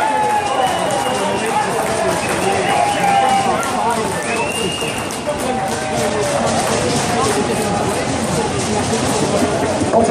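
Football crowd chanting and singing together after a goal, many voices at once.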